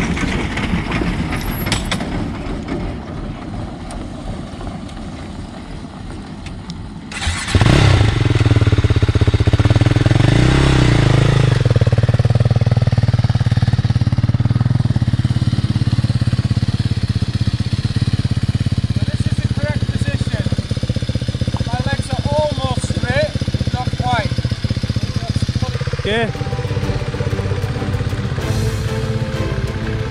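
Dual-sport motorcycle engine starting suddenly about seven seconds in, then running steadily as the bike is ridden in slow circles on a gravel track. Background music comes in near the end.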